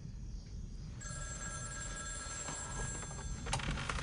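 A telephone ringing: one ring of about two and a half seconds, starting about a second in and stopping shortly before the end.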